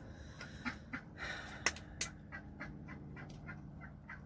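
Ducks quacking in a run of short calls, about three or four a second in the second half.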